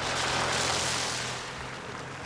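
A soft rushing noise that swells over the first second and fades away, over a faint low steady hum.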